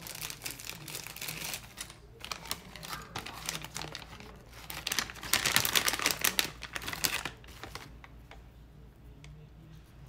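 Wooden wax applicator sticks being handled, with crinkling and light clicking. It is loudest about five to seven seconds in and quieter near the end.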